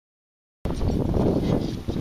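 Dead silence, then about half a second in a sudden cut to steady wind buffeting the microphone.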